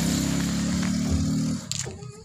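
A vehicle engine idling steadily, cutting away about one and a half seconds in, followed by a short clunk.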